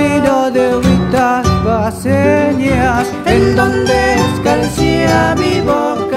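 Cuyo folk music: a cueca played on acoustic guitars and a guitarrón, with strummed chords under a melody line.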